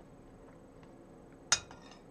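A spoon clinks once against a china plate of porridge about one and a half seconds in, a sharp ring that dies away quickly; otherwise faint room tone.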